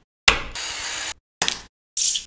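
Hard plastic toy parts being handled, clicked and rubbed against each other, in short bursts cut off abruptly by silence. Near the middle there is a steady scraping rub lasting about half a second, followed by a brief run of small clicks.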